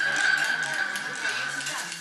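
A homemade musical instrument made from recycled objects, holding one steady high note for about two seconds over a noisy background of children's voices.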